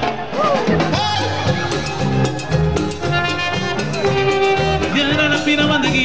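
Live cumbia band playing an instrumental passage: a steady bass and percussion beat under held melody lines.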